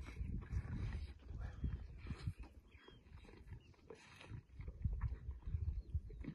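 Lions growling at a warthog kill, low uneven rumbles that ease off for a while in the middle.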